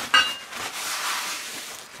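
Kitchen paper rustling and crinkling as a sheet is taken and handled, preceded by a brief high squeak at the very start.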